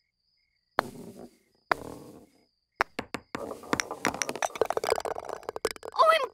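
Cartoon mini-golf sound effects: three sharp putter strikes on golf balls about a second apart, the first two each followed by a short rolling sound, then a fast rattling run of clicks as the balls roll on through the course, which ends in three holes in one.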